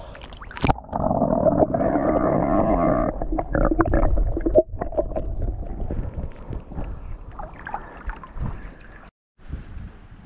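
Seawater sloshing and gurgling around a camera microphone held at the surface by a swimmer, muffled and irregular with small splashes. It is loudest in the first few seconds and then eases.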